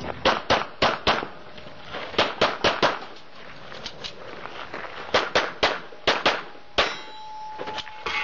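Pistol shots fired in quick strings of four to six, with short pauses between the strings, on a practical shooting stage. After a shot near the end a clear metallic ring hangs on for over a second, typical of a struck steel target.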